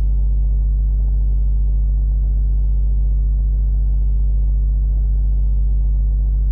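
A loud, steady low hum that does not change, with no other sound standing out.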